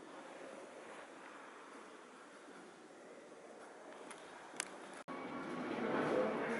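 Steady gallery room tone, an even background hiss, with a single sharp click a little after four and a half seconds. Near the end the sound cuts out for an instant and gives way to a louder, busier sound.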